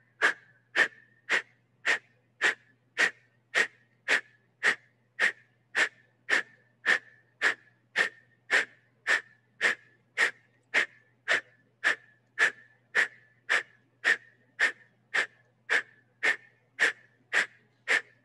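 Kapalbhati breathing: a steady run of short, sharp forced exhales, nearly two a second, each driven by snapping the belly in.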